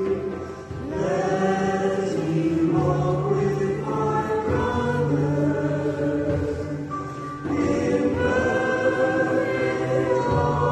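Congregation singing a hymn in slow, held notes, with short breaks between lines about half a second in and around seven and a half seconds.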